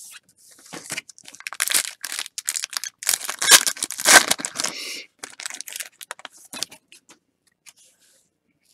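Foil wrapper of a 2019 Topps Series 1 Silver Pack baseball card pack crinkling and tearing as it is opened by hand, loudest about three to four seconds in, followed by lighter rustles.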